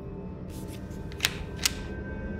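Two sharp mechanical clicks, a little under half a second apart, from a paintball sniper rifle being handled, over a low steady music drone.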